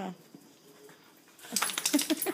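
A dog eating dry kibble from a stainless steel bowl: a quick run of sharp metallic clinks that begins about one and a half seconds in.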